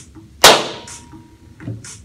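A single sharp hand clap about half a second in, made to trigger a sound-reactive LED strip through a mic amp sensor that only responds to very loud sounds.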